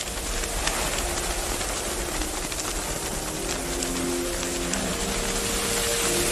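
Steady, loud hiss of street traffic and rushing air from a moving vehicle. Sustained musical notes fade in from about halfway through.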